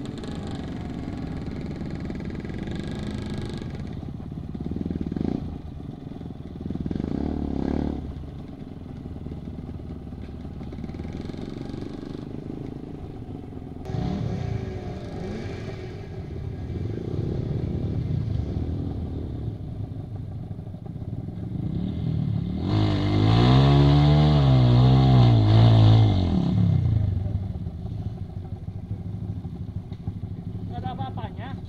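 Off-road trail motorcycle engines running and being revved on a muddy track, with several short swells of throttle. Near the end, one bike close by is revved hard for about four seconds, its pitch rising and then falling, and this is the loudest sound.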